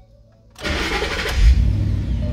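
Ford Mustang engine cranking and starting about half a second in, flaring up briefly, then settling to a steady idle. The start shows that the newly programmed key chip has been accepted by the immobilizer.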